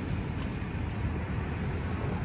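Steady low rumble of road traffic, vehicles passing on the highway bridge beside the pier.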